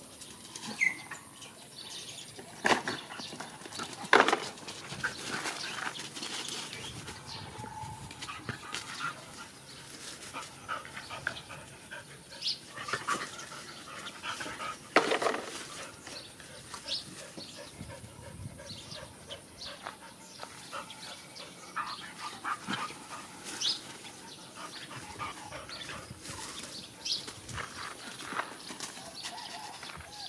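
Several dogs play-fighting, with scattered short barks and yelps; the loudest come in the first few seconds and again about fifteen seconds in.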